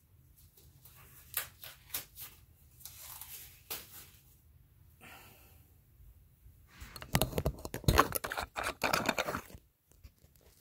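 Handling noise: scattered light clicks and rustles, then about seven seconds in a dense, louder run of scraping, clicking and crinkling as the camera is picked up off its overhead mount and moved in close.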